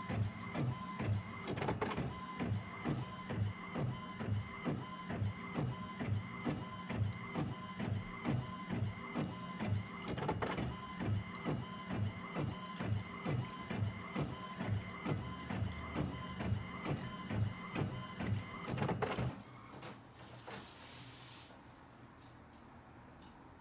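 All-in-one printer's flatbed scanner running a scan, its carriage motor pulsing in an even rhythm of about two pulses a second. The motor stops about nineteen seconds in.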